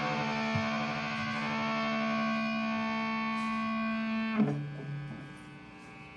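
The band's closing chord, an electric guitar chord held and ringing. About four and a half seconds in it is cut short with a click, and a quieter ring is left fading out.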